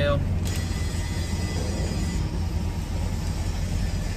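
Vehicle engine running at idle, a steady low rumble heard from inside the cab.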